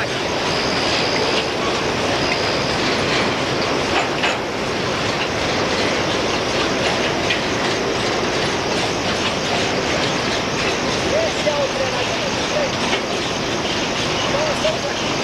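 Freight train passing close by, a steady loud rolling rattle of wheels on rails, with a thin high wheel squeal in short spells during the first few seconds.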